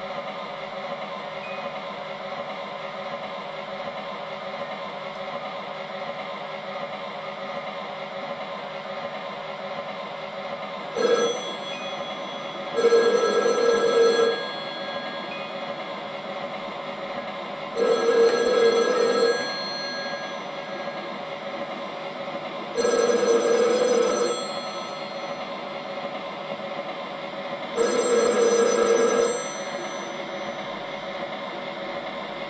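A telephone ringing: a brief first burst about eleven seconds in, then four rings of about a second and a half each, spaced about five seconds apart, over a steady background hum.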